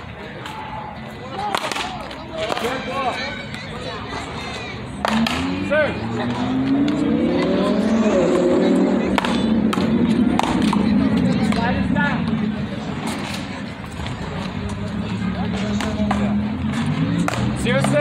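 Sharp knocks every few seconds from a rubber ball struck with paddles and bouncing off a concrete handball wall during a rally. From about five seconds in, a louder engine sound rises in pitch for a few seconds, as a motor vehicle accelerating, and then holds steady before fading back.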